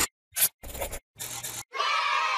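Three short swishing sound effects, one after another, as a logo's letters pop onto the screen. Near the end a longer, louder sustained sound begins.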